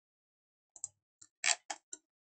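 A handful of short, sharp clicks from a computer mouse and keyboard, starting a little under a second in, the loudest about one and a half seconds in.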